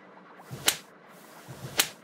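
Two sharp slaps about a second apart, a hand striking a face, as a cartoon sound effect.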